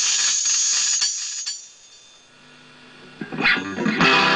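Electric guitar played through a Moog MF-102 ring modulator with overdrive: a dense, metallic, rhythmic strumming for about a second and a half that dies away, a quiet stretch with faint low notes, then a short loud sweep in pitch near the end as a sustained chord comes in.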